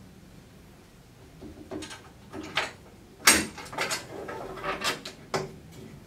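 Metal clicks and clanks of a steel WCS Tube Trap being unset by hand: the safety, dog and strike bar are released and the strike bar is let up. One sharp metallic click comes about three seconds in, followed by several lighter clicks and rattles.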